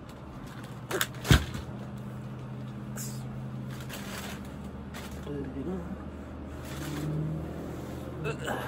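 An oversized hooded blanket-sweatshirt rustling and swishing as it is pulled on over the head, with two sharp knocks about a second in, the second the loudest sound here. A steady low hum runs underneath.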